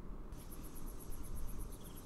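Insects chirping in a rapid, evenly pulsing high-pitched trill, about ten pulses a second, starting about a third of a second in, over a faint low rumble: outdoor scrubland ambience in a TV soundtrack.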